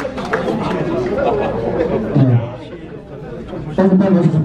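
Indistinct chatter of several people talking in a hall. It dips quieter past the middle and gets louder again near the end.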